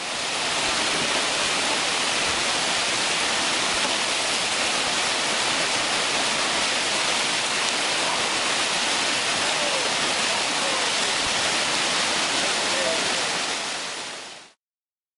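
River rapids rushing loudly and steadily, a continuous roar of whitewater around a standing wave.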